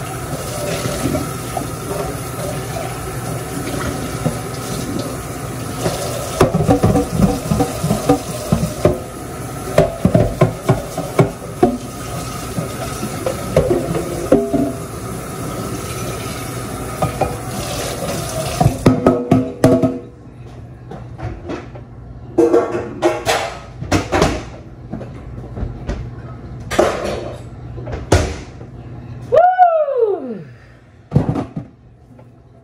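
Kitchen faucet running into a sink while dishes are rinsed, with frequent clatters and clinks of dishes. The water shuts off about two-thirds of the way through, leaving separate clinks and knocks of glasses and dishes being handled.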